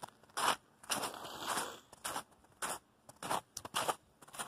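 Footsteps crunching through snow at a walking pace, about six steps.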